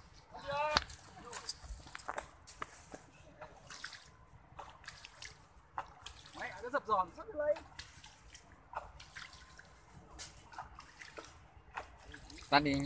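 Hands splashing and sloshing in pond water, a run of short irregular splashes and drips as someone rinses their hands at the water's edge.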